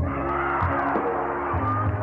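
An R&B band's backing music on a live concert recording, with the audience cheering and yelling over it between the spoken dedications.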